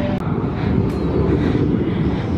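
Many motorcycle engines running at once, a loud, steady low drone.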